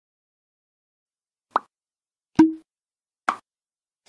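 Animated-outro sound effects: after about a second and a half of silence, three short pops come roughly a second apart, the middle one with a brief low tone.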